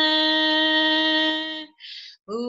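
A woman singing a chant unaccompanied, holding one long steady note that ends about one and a half seconds in, followed by a short intake of breath.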